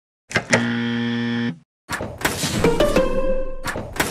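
A harsh, steady electronic buzzer sounds for about a second just after the Delete button is pressed, the sign of a deletion or rejection. After a short gap comes a noisier cartoon sound effect with clicks and a held tone, as the crewmate vanishes.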